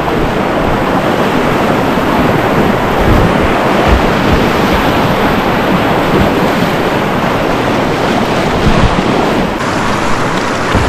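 Loud, steady rushing of river whitewater as a kayak runs a rocky rapid, with water churning close around the hull. The hiss eases slightly near the end as the boat reaches calmer water.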